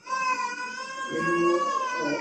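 A baby crying in one long wail held at a steady pitch, starting abruptly, with a second, lower voice joining about a second in.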